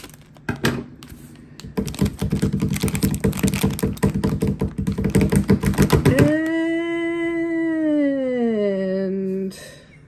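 Foil mystery pin pouch crinkling and rattling in the hands as it is cut open and a pin is pulled out, a dense run of quick clicks and crackles. Then a long, drawn-out "hmm" from a woman that falls in pitch as she puzzles over the pin.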